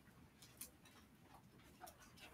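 Near silence with a few faint ticks and scratches of a ballpoint pen writing on lined notebook paper.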